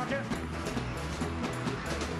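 Live rock-and-roll band playing between sung lines: a repeating bass line under regular drum hits, with the singer's voice dropping out at the start.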